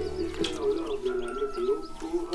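Dove cooing in repeated wavering phrases, with small birds chirping high above it. A single light knock comes about half a second in.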